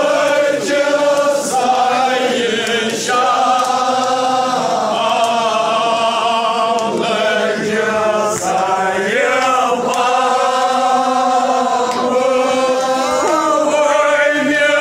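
A large crowd chanting together in unison, many voices holding and gliding through long sung notes.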